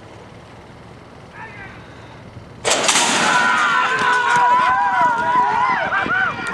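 Steady outdoor crowd background. About two and a half seconds in, a sudden loud outburst of many voices shouting and cheering at once, with one long held yell through the middle of it.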